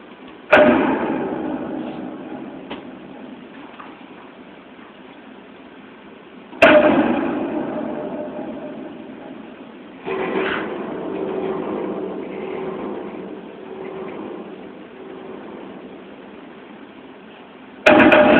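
A film soundtrack over cinema speakers, recorded through a phone: three loud, deep booming hits, each ringing out in a long echo. The third comes about ten seconds in and holds on as a steady low hum.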